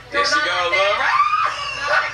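Excited, high-pitched voices shouting and shrieking, with one voice rising in pitch about a second in.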